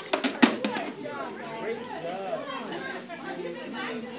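Young children's voices chattering and calling out together in a classroom while taking cover, with a quick clatter of sharp knocks in the first second, the loudest about half a second in.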